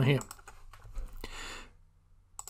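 A few faint clicks from a computer keyboard and mouse, with a short soft hiss lasting about half a second, starting about a second in.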